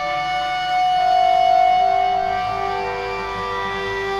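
Music: several long bowed cello notes held and layered over one another, changing slowly, with no singing. The notes swell slightly about a second in.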